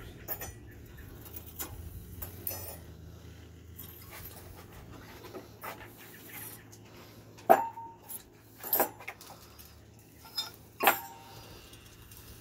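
Rusty steel parts of a dismantled bulldozer steering clutch knocking together: a few sharp metallic clinks with a brief ring in the second half, as springs and bolts are handled against the toothed steel clutch drum.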